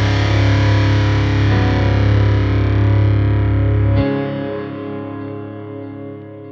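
Deathcore track's final chord: distorted electric guitars hold a sustained chord over heavy low bass. About four seconds in the low end cuts off, and the guitar rings on, fading out.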